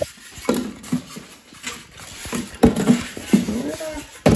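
Styrofoam packing blocks knocking and rubbing against a cardboard box as a microwave is unpacked, with several sharp knocks.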